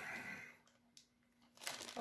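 Faint crinkling of a clear plastic bag of model-kit sprues being handled. It comes at the start and again near the end, with a near-silent pause and a single tiny click between.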